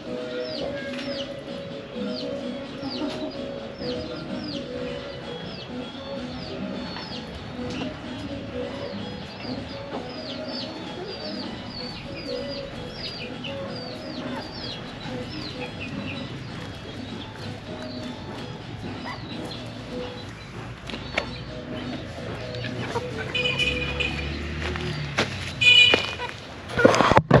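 Free-ranging backyard chickens clucking, with short high chirps repeating a few times a second throughout. A few knocks and rustles come near the end.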